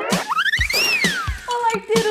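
Short intro jingle with a steady beat and a cartoonish sound effect: a wobbly rising-then-falling whistle-like glide about a second in, followed by held, slightly wavering vocal-like tones near the end.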